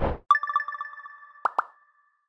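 Edited-in chime jingle: a quick run of bright, bell-like notes that ring on for over a second. Two short pops come about a second and a half in.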